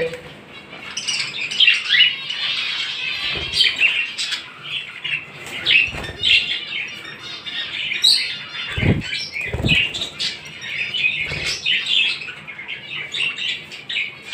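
Caged budgerigars chirping and chattering continuously, with a few short, soft thumps of wings flapping against the cage.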